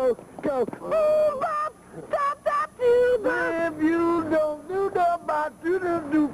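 A person's voice making wordless, sing-song held notes that slide up and down and break off every second or so.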